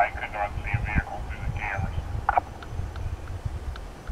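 Police radio traffic: a thin, narrow-sounding voice over a shoulder-mounted radio for the first couple of seconds, with low wind rumble on the microphone and a few faint clicks afterwards.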